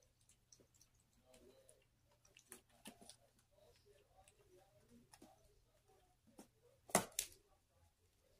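Faint clicks and scratches of a striped skunk's claws on the plastic floor and sides of a tub, with two sharper knocks close together about a second before the end.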